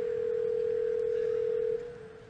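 Telephone ringback tone on an outgoing call: one steady ring of about two seconds that stops near the end, as the called line rings before it is answered.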